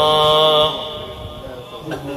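A male Quran reciter's voice holding a long, steady note at the end of a phrase of melodic (mujawwad) recitation. The note stops about two-thirds of a second in, leaving only fainter background sound.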